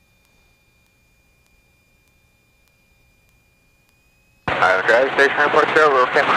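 Near silence with only a faint steady high tone, the gated quiet of an aircraft headset or intercom recording with no engine noise coming through. About four and a half seconds in, a voice cuts in abruptly and keeps talking.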